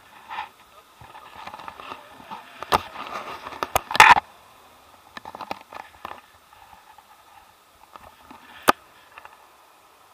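Handling noise on a hand-held action camera: scrapes and rustles with sharp clicks, the loudest around four seconds in and another near the end, over faint wind on the microphone.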